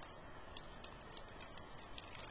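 Faint, irregular light clicks and ticks from trading cards being handled and shuffled by hand.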